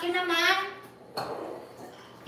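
A high voice sings out one long vowel that rises in pitch, then a brief scrape about a second later.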